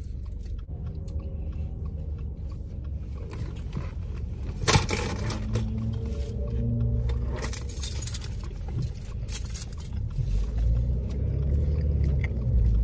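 Foil sandwich wrapper crinkling in several short bursts, over the steady low rumble of a car's interior.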